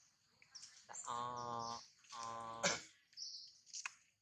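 Small birds chirping in short, high calls, with a man's two drawn-out "ah" sounds about one and two seconds in and a sharp click shortly before the three-second mark.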